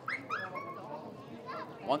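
Crowd noise from the stands at a ballpark, with a brief high-pitched cry near the start.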